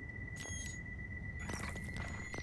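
Quiet, tense ambient sound from an animated episode's soundtrack: a low rumble under a steady high-pitched tone, with faint electronic clicks about half a second in and again about a second and a half in.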